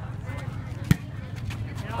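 A single sharp smack of a volleyball being hit about a second in, over a low murmur of an outdoor crowd.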